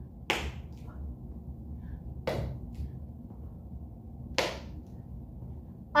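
Three heel digs in a beginner tap exercise, a dance shoe's heel striking a hard floor, about two seconds apart.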